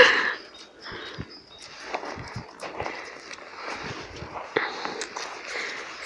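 Footsteps in snow: a series of short, quiet crunches at an irregular pace.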